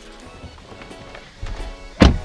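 Instrumental background music under low thuds and rustling as a person climbs into a car seat, with a heavier thud about one and a half seconds in.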